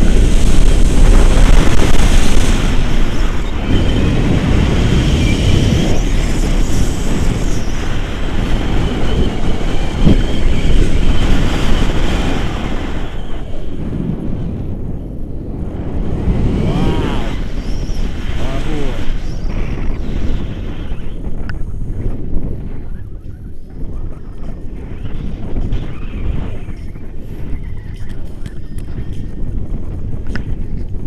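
Rushing wind buffeting the microphone of a tandem paraglider in flight. It is loudest for the first dozen seconds, then eases. A man's wordless shouts come through it near the start and again partway through.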